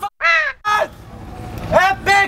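A man's loud wordless shout, falling in pitch, about a quarter second in, with a shorter one right after it. Another shout starts near the end.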